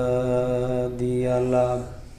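A man's voice chanting the Arabic opening invocation of a sermon, holding one long melodic note. The note breaks briefly about a second in, resumes, and stops near the end.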